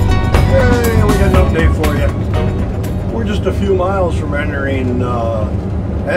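Steady low drone of a motorhome travelling at highway speed, heard from inside the cab, under a man's voice and fading background music.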